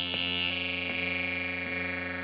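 Analogue synthesizer playing a held chord over a steady low drone, with its bright upper tones slowly shifting. A soft pulse recurs about every three-quarters of a second.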